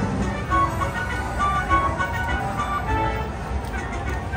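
Buffalo Gold slot machine playing its big-win celebration tune, a run of short bright chimes, while the win meter counts up. Casino floor noise runs underneath.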